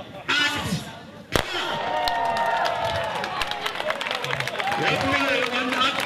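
The last numbers of a countdown are called, then a single starting-pistol shot cracks about a second and a half in. Right after it a crowd of children and spectators cheers and shouts as the race starts.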